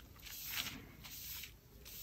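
An Immacuclean cleaning pad rubbed over the paper back cover of a comic book: two or so faint swishing strokes as it lifts surface dirt.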